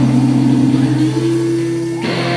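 Live rock band holding a sustained chord on electric guitars, a steady low drone with little drumming under it.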